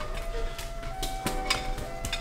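A few light clinks and taps of a metal ladle against a small container as minced garlic is scooped out.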